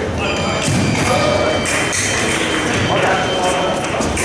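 Busy fencing-hall ambience: voices echoing in a large hall, with scattered thuds of footsteps on the piste.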